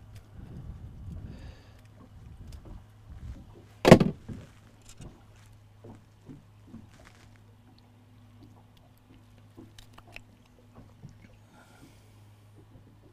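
Handling noise from catching a bait shiner out of a boat's bait well: one sharp knock about four seconds in, then scattered small knocks and clicks, over a steady low hum.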